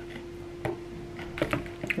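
A few light clicks and ticks of a clear plastic takeaway food container being handled, over a faint steady hum.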